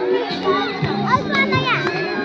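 A crowd of young children chattering and calling out over music playing with a steady melody.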